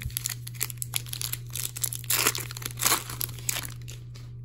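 Foil wrapper of an Upper Deck hockey card pack crinkling as it is torn open and the cards are pulled out: irregular crackles, loudest about two and three seconds in.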